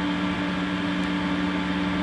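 Steady electric hum of avionics cooling fans with a Cessna 182T's Garmin G1000 powered up: two constant low tones over an even hiss.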